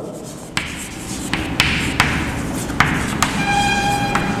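Chalk writing on a chalkboard: a series of sharp taps as the chalk strikes the board, with scratchy strokes between them and a brief squeak near the end.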